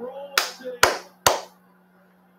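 Three sharp hand claps about half a second apart, after a brief voiced exhale.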